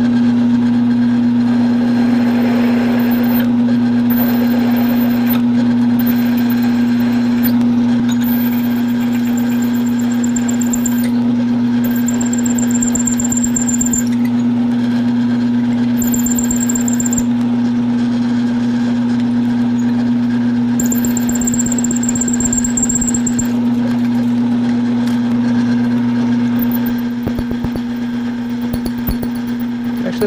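Round column mill-drill running with a steady motor hum while a twist drill is fed into the workpiece by the quill wheel. Through the middle of the stretch the drill squeals on and off, high-pitched, as it cuts dry with no cutting lube.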